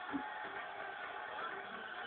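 Faint, steady background noise of a TV fight broadcast, with faint traces of music; no distinct event stands out.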